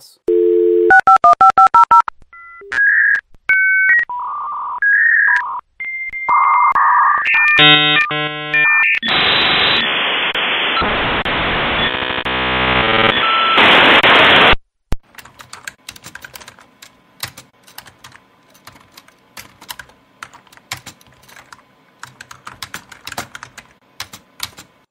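A dial-up modem connecting. First a dial tone, then a quick run of touch-tone dialing, then a string of held answer and handshake tones, then about five seconds of harsh hissing static that cuts off suddenly. After that comes fast, irregular clicking of typing on keys.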